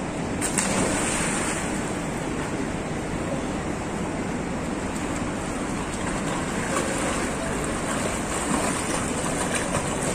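Pool water splashing and sloshing as a swimmer dives in and swims the crawl, over a steady rushing noise. There is a sharper splash about half a second in.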